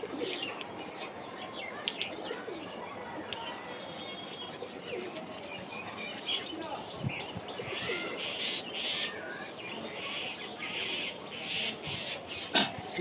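Chalk tapping and scraping on a blackboard as words are written during the first half, with birds chirping and cooing in the background, the chirping busiest in the second half.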